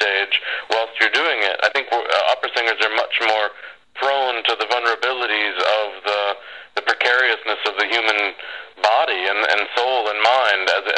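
Speech only: a man talking steadily in an interview, with a few brief pauses.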